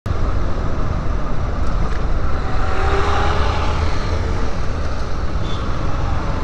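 Yamaha Lander 250 single-cylinder motorcycle riding in city traffic: the engine running under heavy, steady wind rush on a helmet-mounted camera microphone.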